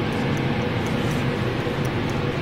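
A steady low rumbling noise with a faint hum.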